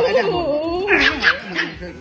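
A puppy vocalizing with drawn-out whining, howl-like sounds that slide up and down in pitch, with a sharper burst about a second in.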